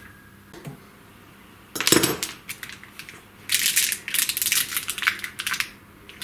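Hands working a nylon zip tie and the plastic corrugated cable conduit: a sharp knock about two seconds in, then a run of rapid, fine clicking and rustling for the last few seconds.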